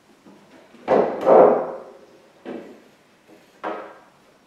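Wooden knocks and clatter from a wooden prop stick being worked free of a raised plywood body section: a loud double knock about a second in, then two lighter knocks.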